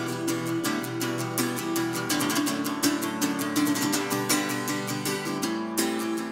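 Acoustic guitar strummed in a steady rhythm, with many strokes a second and no voice.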